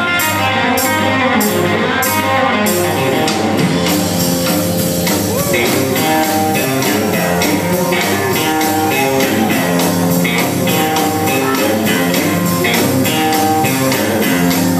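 A rockabilly band playing live: electric guitar over upright bass and a drum kit, an instrumental passage with a steady driving beat.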